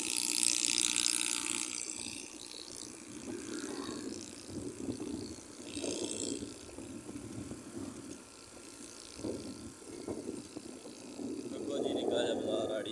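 A small motorcycle's engine running as it rides along a road, heard from the handlebars with an uneven, pulsing sound. Wind rushes over the microphone in the first couple of seconds.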